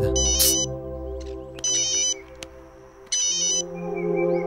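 Mobile phone ringing: a short electronic trill of rapid high tones, heard three times about a second and a half apart, over soft background music.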